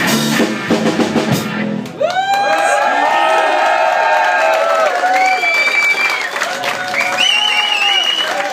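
Live rock band, with drum kit, bass and electric guitars, playing its last bars and stopping about two seconds in, followed by an audience cheering and whistling.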